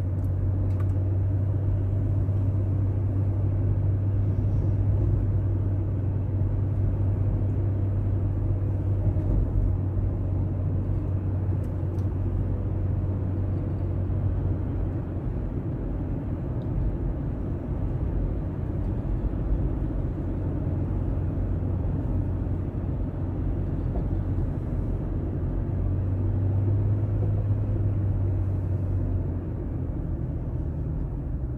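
A car's engine and tyre rumble, heard from inside the cabin while driving along a paved road. It is a steady low drone, stronger for about the first half and again near the end.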